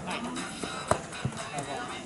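A futsal ball kicked once sharply about a second in, with a few lighter knocks after it, amid players' voices on the pitch.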